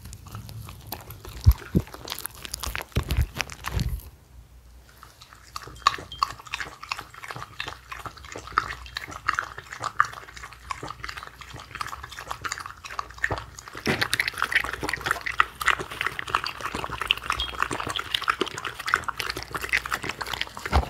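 Shetland sheepdogs eating from a hand: a few heavy chewing bites in the first seconds, a short lull, then a long run of quick, wet smacking and licking sounds that gets denser in the last third.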